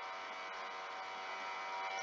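Faint steady electrical hum and hiss, with several thin steady tones held throughout.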